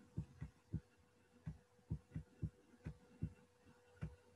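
Faint, soft knocks of a stylus tapping and stroking across a tablet screen while handwriting, about a dozen at uneven intervals, over a faint steady hum.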